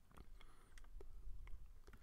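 Faint, scattered clicks from a computer mouse, about five in two seconds, over a low steady room hum.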